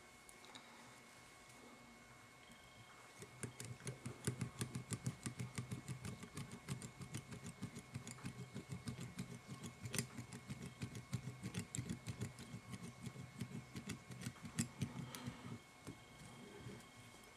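Waxed fly-tying thread being wound by hand around a hook shank in a vise: a fast run of faint, soft ticks, several a second. It starts about three seconds in and stops near the end.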